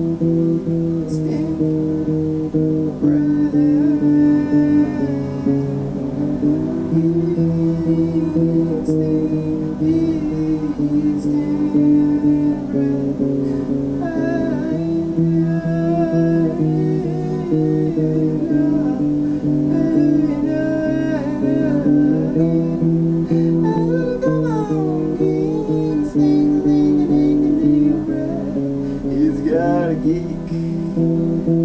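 Acoustic guitar strummed in steady chords, with a voice singing along at times over it.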